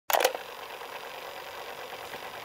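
A quick double click at the very start, then a steady hiss.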